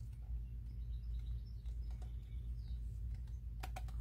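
Rolled parchment paper scroll handled by hand, with faint rustling and a few light crackles near the end, over a steady low hum.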